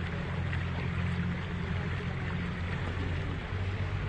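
A pontoon boat's motor running steadily at low speed, a low hum, under an even hiss of water.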